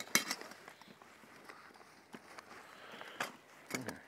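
Light clicks and rustling of camping gear being handled, with a stainless steel cup being packed.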